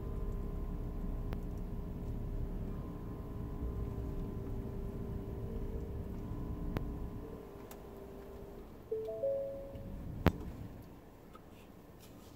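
Cabin of a Ford F-150 backing slowly under its park assist: a low rumble with a steady electronic tone from the parking system. A short two-note chime sounds about nine seconds in, and a sharp click follows about a second later.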